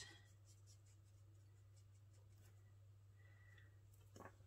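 Near silence: faint, light scratching of a marker tip colouring on cardstock, over a steady low hum.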